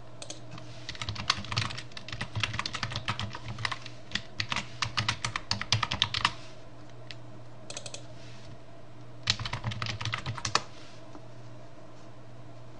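Typing on a computer keyboard: a fast run of keystrokes lasting about five seconds, then two shorter runs, over a steady low hum.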